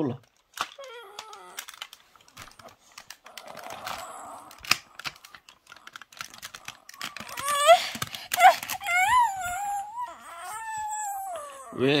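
Plastic clicks and clacks of a toy vehicle being pressed and handled, then from about seven seconds in a small child whining in a high voice that rises and falls in pitch, several times over.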